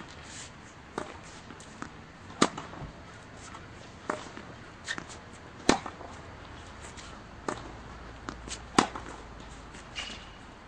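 Tennis rally: a ball struck back and forth off rackets and bouncing on the court, a sharp pop every second or so, the loudest hits coming about three seconds apart.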